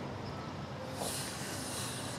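Low background noise between lines, with a soft high hiss that swells for about a second in the second half.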